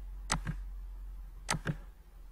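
Computer mouse clicked twice, about a second apart, each click a sharp press followed by a softer release, as faces are picked one at a time in a 3D program. A low steady hum sits underneath.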